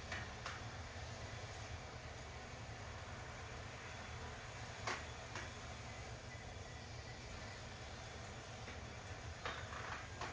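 Faint steady hiss of water spraying from a lawn sprinkler over a low rumble, with a few light clicks and knocks as the sprinkler is handled, the sharpest about five seconds in.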